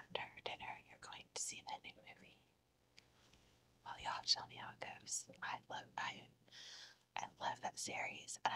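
A woman whispering softly in short phrases, with a pause of about a second a little over two seconds in.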